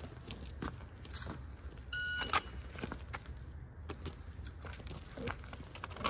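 Electronic shot timer giving its start beep: a single short, high, steady tone about two seconds in. A few light clicks and gear rustles follow.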